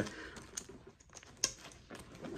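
A few light clicks and soft rustling as a backpack's webbing straps and plastic buckle are handled, the sharpest click about one and a half seconds in.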